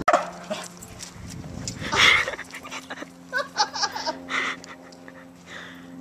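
A small dog barking a few times, with short higher yips in between.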